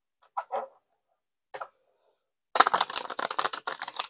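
A deck of tarot cards being shuffled by hand: a few soft taps of cards, then, from about halfway in, a dense run of rapid card flicks lasting about a second and a half.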